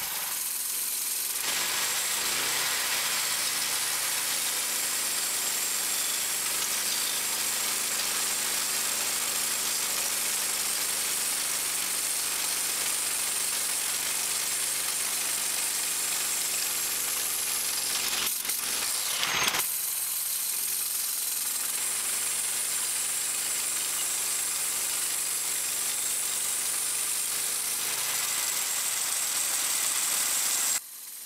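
A 6.5 hp Harbor Freight Predator single-cylinder gas engine running steadily, driving the band blade of a homemade wooden bandsaw mill as it saws through a mulberry log. A couple of short knocks come a little past the middle.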